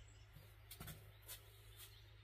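Near silence, with a few faint, short ticks and clicks.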